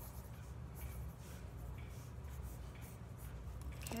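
Faint, irregular scratching of a drawing tool on paper, over a low steady hum.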